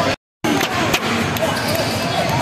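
A basketball bouncing on a hardwood court, a few sharp knocks about half a second to a second in, over a steady background of players' and spectators' voices. The sound drops out completely for a moment just after the start.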